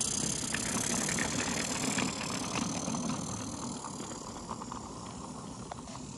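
Mamod Brunel live steam locomotive running along small-gauge garden track, with a steady hiss of steam over a low rumble. It grows gradually quieter as it moves away.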